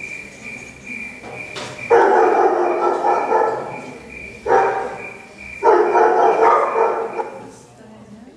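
Three loud, drawn-out vocal cries, the first the longest, over a steady high-pitched whine.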